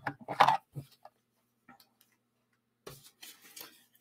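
A few light taps and clicks from paper and craft supplies being handled on a work table, bunched in the first second and again about three seconds in, with a quiet stretch between.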